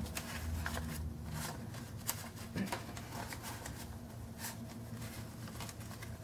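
Paper banknotes handled and flicked through by hand as a stack of cash is counted: soft rustles and crackles of paper, with a few sharper flicks.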